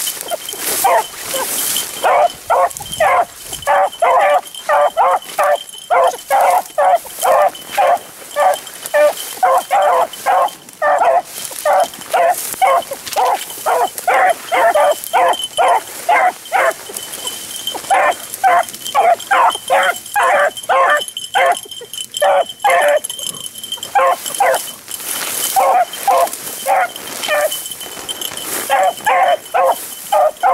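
Beagles baying in a steady run of short barks, about two to three a second, with a brief lull about two-thirds of the way through: hounds giving voice on the trail of a rabbit.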